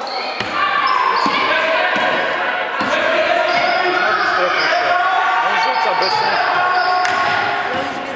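Basketball game in a large hall: many young voices calling and shouting over one another, with a few basketball bounces on the wooden floor.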